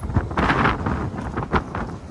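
Wind buffeting the microphone of a rider on a moving electric kick scooter, with road and traffic noise underneath; the wind comes in louder gusts about half a second in and again near the end.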